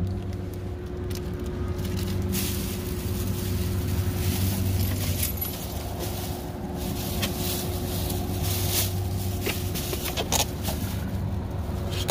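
A vehicle engine idling with a steady low hum, heard from inside the cab. Plastic bag crinkling and a few sharp clicks come over it, the crinkling mostly in the first half.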